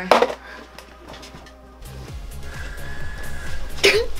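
Background music that comes up about halfway through, with a stepped bass line and a held high note, growing louder toward the end; a brief voice sounds right at the start.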